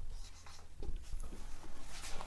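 Marker pen writing on a whiteboard: a few short, faint strokes.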